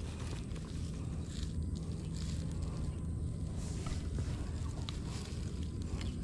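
Faint rustling and a soft click or two as hands thread a caught carp onto a thin branch used as a stringer, over dry grass, above a steady low rumble.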